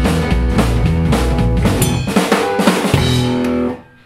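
Rockabilly band of upright double bass, electric guitar and drum kit playing the closing bars of a song, with a run of drum hits and a last held chord that cuts off sharply near the end.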